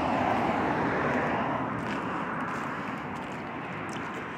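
Steady vehicle noise, a rushing sound that eases slightly toward the end.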